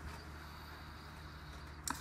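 Quiet room tone with a steady low electrical hum and a faint click near the end.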